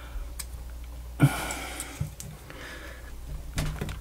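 Small clicks and a brief scraping rustle about a second in as the plastic housing and circuit board of an AUKEY SH-PA1 smart plug are handled and pushed at by hand, trying to free its terminals, which are soldered to the board and won't come through.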